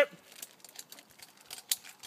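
A few scattered light metal clicks and rattles from zipline clipping hardware, carabiners and trolley being clipped onto the cable.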